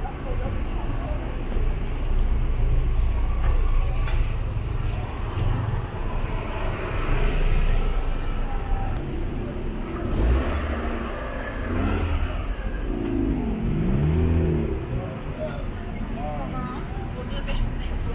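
Street traffic at close range: car engines running and moving slowly through a crossing, a steady low rumble, with passers-by talking. One nearby voice stands out for a couple of seconds about two-thirds of the way through.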